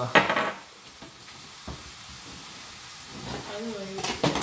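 A short, loud rasping burst of seasoning going on, then chicken frying in coconut oil, sizzling steadily in the pan. A brief hummed voice comes near the end.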